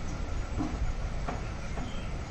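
Hand milking: streams of milk squirting into a plastic bucket in a steady rhythm, a stroke about every two-thirds of a second, over a steady low background noise.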